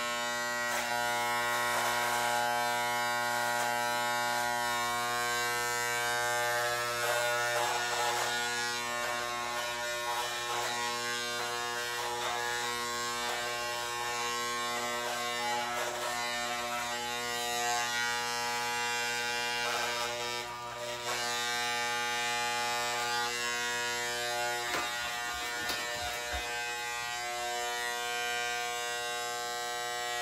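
Corded electric hair clippers running with a steady buzz while cutting hair on the sides of the head, the tone shifting briefly now and then as the blades move over the scalp.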